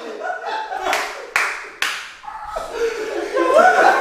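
Three sharp hand smacks, the first about a second in, each under half a second apart, amid men laughing and talking.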